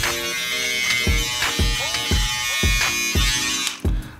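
King C. Gillette cordless beard trimmer buzzing steadily as it cuts through a beard, stopping just before the end. Background music with a steady beat plays underneath.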